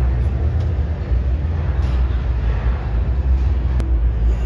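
Steady low rumble of a large indoor exhibition hall, with a pickup truck moving over a demonstration ramp. There is a sharp click near the end.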